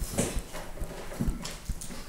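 Stylus tapping and scratching on a tablet screen while words are handwritten: a few irregular short knocks with light scratching between them.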